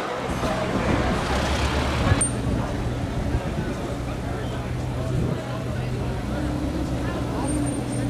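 Busy street traffic with car engines running at low speed and voices mixed in. About two seconds in the sound changes abruptly, and a steady low engine idle takes over.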